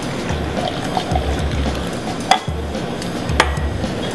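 Vodka poured from a bottle into a mixing glass, a liquid stream over steady background music, with two sharp knocks, about halfway and near the end.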